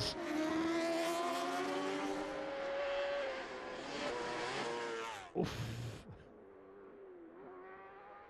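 Superstock road-racing motorcycle engine at high revs, its note sliding down and then climbing again as it pulls away. About five and a half seconds in, the sound cuts sharply to a much quieter engine note of a bike approaching.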